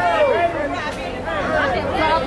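Chatter of a crowd of people in open stands: many voices overlapping, some calling out.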